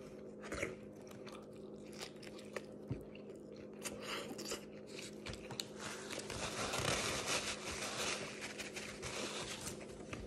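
A person chewing a mouthful of Subway wrap with the mouth closed, with small wet clicks and smacks, faint throughout. A faint steady low hum sits underneath.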